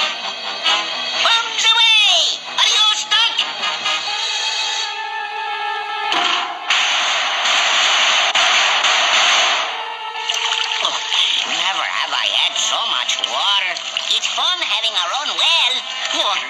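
Cartoon soundtrack: orchestral music with sound effects, including a falling whistle-like glide about two seconds in and a loud rushing noise lasting about four seconds from six seconds in, followed by voices.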